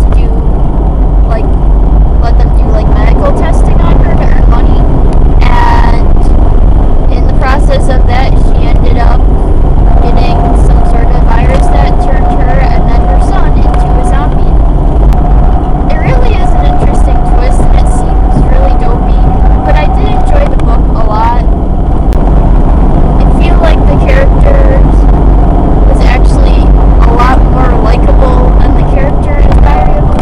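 Car cabin noise while driving: a loud, steady low rumble of engine and road. A thin steady whine sits above it, and a person's voice can be heard talking under the rumble.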